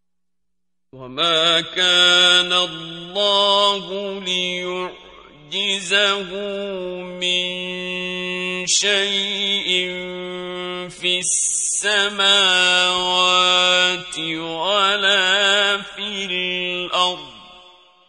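A solo male voice reciting the Quran in the melodic mujawwad style: long held, ornamented notes with wavering pitch and brief breaks between phrases. It starts about a second in and fades out just before the end.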